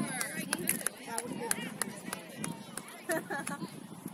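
Indistinct overlapping voices of spectators and players calling out at a youth soccer match, with a few sharp ticks.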